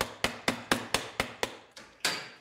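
Hammer blows in a quick, even series, about four a second, each with a brief ringing tail.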